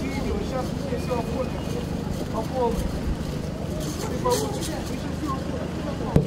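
Low, steady rumble of an idling city bus engine, with scattered indistinct voices of a crowd over it.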